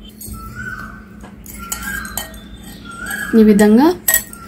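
A few faint clinks of a steel bowl and spoon being handled, over a steady low hum and a few short, high chirp-like tones. A loud voice comes in near the end.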